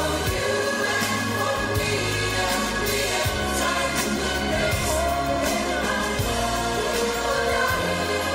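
A large choir singing together with a band, over held chords and a steady bass line.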